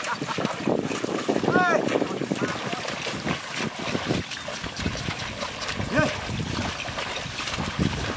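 A pair of cattle and a wooden plough sloshing and splashing through a flooded, muddy rice paddy as it is ploughed. A few short voice calls cut through it, one a little under two seconds in and another about six seconds in.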